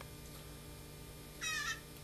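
Fledgling blue jay giving one short, high call about one and a half seconds in, over a faint steady hum.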